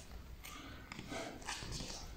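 Faint shuffling and a few soft taps of two wrestlers' feet moving on training mats while locked in a clinch.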